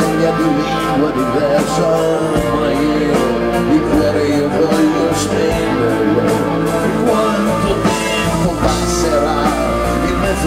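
Live rock band playing: electric guitars over a drum kit with steady cymbal and drum hits, at full concert volume.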